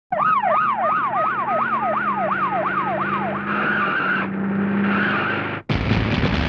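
A siren sweeping rapidly up and down in pitch, about four times a second, over a low steady hum, then changing to a wavering tone. It cuts off abruptly near the end, and a sudden loud noisy burst follows.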